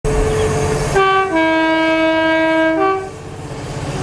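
Class 66 diesel locomotive sounding its two-tone horn for about two seconds: a short high note, a long low note, then a short high note again. The locomotive's two-stroke diesel engine rumbles before and after the horn.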